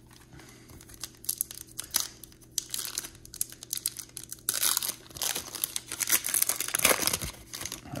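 Plastic wrapper of an Upper Deck MVP Hockey card pack being torn open and crinkled by hand. The crackling is scattered at first, then gets denser and louder about halfway through.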